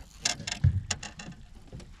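A series of irregular clicks and knocks, with a heavier thump about two-thirds of a second in.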